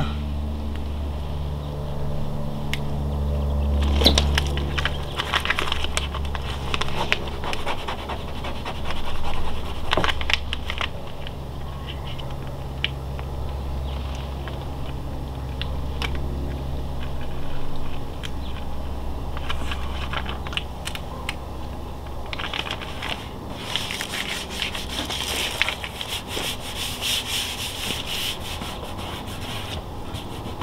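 Transfer tape being peeled slowly back off a freshly applied vinyl decal: a crinkling, rubbing crackle with scattered ticks, growing denser and hissier for a few seconds near the end. A low steady rumble lies underneath for most of it.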